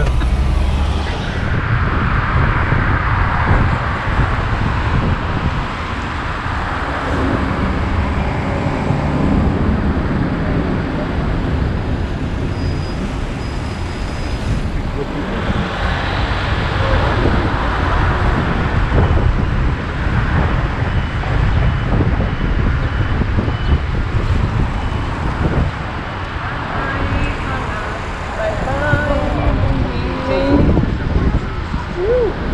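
Car driving in city traffic: steady engine and tyre noise with the sound of surrounding traffic.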